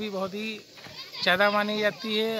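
A man speaking in short phrases, with a brief pause about halfway through.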